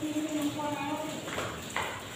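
A person's voice holding one drawn-out, even-pitched sound for about a second, followed by two short sharp clicks in the second half.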